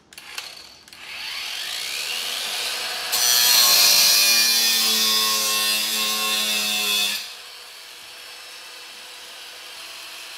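Angle grinder with a cutting disc spinning up with a rising whine, then cutting through rusted-in screws with a loud rasping screech for about four seconds; the cut stops about seven seconds in and the grinder runs on more quietly.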